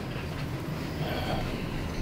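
Steady low background hum and hiss of the room, with a faint, brief murmur about a second in and no distinct event.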